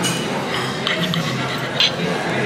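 A metal spoon clinks a few times against a dish, with the sharpest clink near the end, over a background of voices and music.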